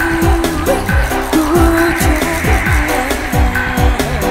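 Live house-style dance remix of a pop song. A deep electronic kick drum falls in pitch on every beat, a little over two beats a second, under a melody line.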